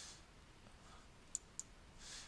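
Two faint computer mouse clicks about a quarter second apart, over near-silent room tone.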